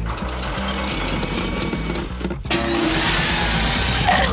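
Movie-trailer score music with steady low bass notes. About two and a half seconds in, after a brief drop-out, a loud rising whoosh sound effect cuts in and builds.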